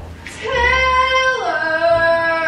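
A young woman's voice holds a long, high, clear note that drops to a lower pitch about one and a half seconds in.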